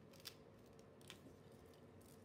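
Near silence: faint room tone with two faint clicks of fingers handling a sticker on a planner page, about a quarter second and a second in.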